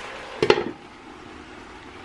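A single metallic clank with a short ring about half a second in, as of a mesh splatter screen set on a skillet, then diced potatoes and vegetables frying in oil under the screen with a soft, steady sizzle.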